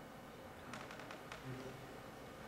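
Quiet room tone in a pause, with a few faint clicks a little past halfway.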